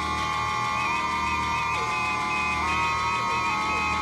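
Electronic music intro: held synthesizer tones that step to new pitches about once a second, with no beat.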